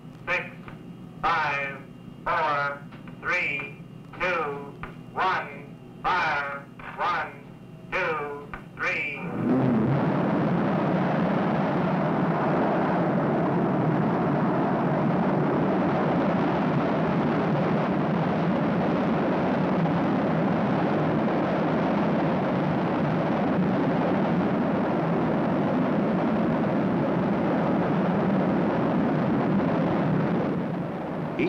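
The last numbers of a countdown are called over a microphone, one about every second. At about nine seconds a liquid-propellant missile motor ignites on a static test stand and fires continuously, held down, with a sudden, loud, steady rushing noise that does not let up.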